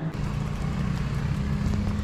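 A motor vehicle engine running steadily nearby, heard as a low even hum.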